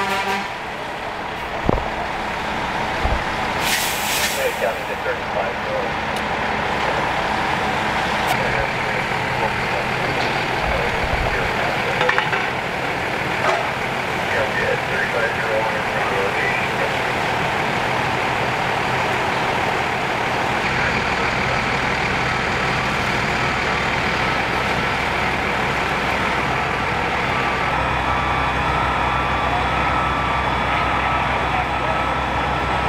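Fire trucks' diesel engines running steadily, a constant drone that grows heavier in the low end about two-thirds of the way through. A short burst of air hiss comes about four seconds in.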